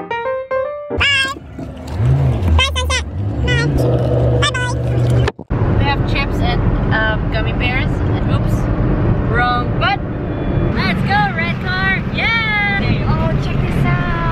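High-pitched voices and playful squeals inside a moving car, over the steady low hum of engine and road noise; a piano tune ends about a second in.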